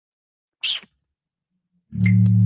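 A single short, sharp breath noise at the microphone about half a second in, a quick sniff or exhale lasting about a quarter second. Music with a steady bass and a beat starts just before the end.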